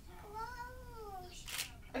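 A young child's single drawn-out, whiny vocal sound that rises then falls in pitch over about a second, followed by a short breathy sound.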